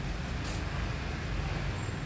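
Steady low rumble of road traffic, with a short hiss about half a second in.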